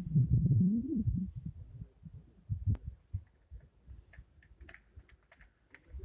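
Low, uneven rumbling of wind on the microphone, loudest in the first second and then dying down, with a few faint ticks later on.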